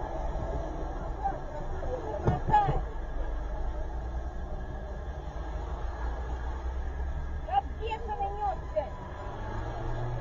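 Indistinct voices coming and going over a low, steady rumble, heard inside a stationary car.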